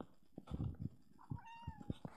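A cat gives one short meow about halfway through, its pitch dropping slightly. Around it are several low thumps and rustles, louder than the meow.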